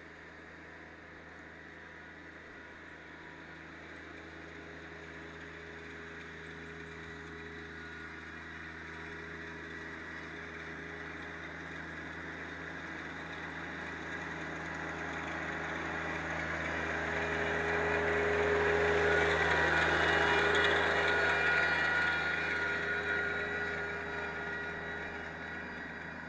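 Rural King RK24 compact diesel tractor running at a steady speed as it drives toward and past, growing louder to a peak about twenty seconds in and then easing off. Near the peak a scratchy hiss comes from the pine straw rake's tines dragging dry leaves and brush behind it.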